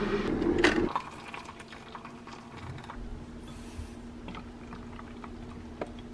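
Liquid being poured into a container for about the first second, followed by a faint steady hum with a few light clicks.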